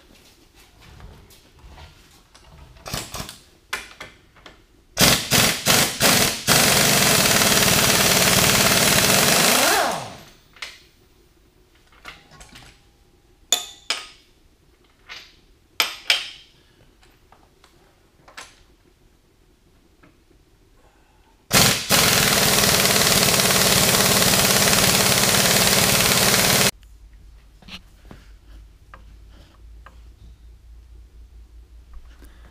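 Impact wrench hammering on the engine-mount bolts: a few short bursts, then about three seconds of steady hammering that winds down with a falling whine. A second run of about five seconds comes near the end. Sharp metal clinks of tools come in between.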